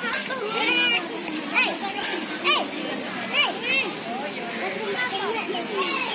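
Many children's voices shouting and calling at play, overlapping, with short high-pitched squeals about every second.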